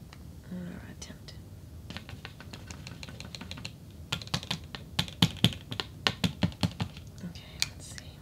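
Light, irregular clicks and taps of small makeup bottles, caps and a brush being handled and set down against a paper plate while foundation is mixed. The clicks grow denser and louder from about halfway through.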